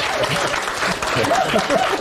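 Applause, with laughter and voices mixed in, in reaction to a joke.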